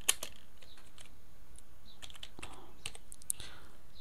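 Computer keyboard typing: irregular, scattered keystrokes, the sharpest one just after the start, over a faint steady hiss.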